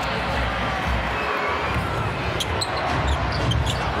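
Basketball game sound in an arena: steady crowd noise with a basketball dribbling on the hardwood court. A few short high squeaks come in the second half, typical of sneakers on the floor.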